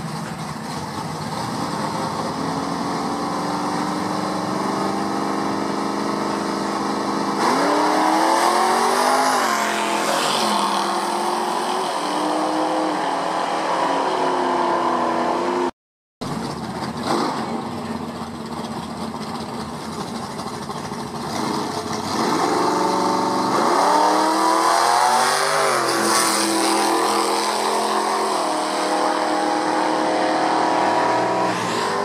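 Drag-racing muscle cars: engines idling at the starting line, then launching hard. Each engine climbs in pitch, drops back at each gear shift and climbs again as the cars pull away down the strip. After a brief dropout the same thing is heard again from a second pair of cars.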